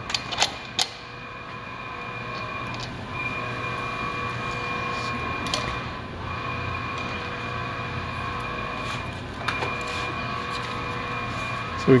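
A steady machine hum made of several held tones, swelling in over the first couple of seconds and dipping briefly midway. A few light clicks and knocks come from the metal banner-stand poles being handled.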